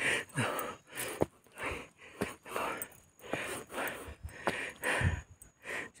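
A person breathing hard and fast while climbing steep concrete steps, with a quick run of short breaths.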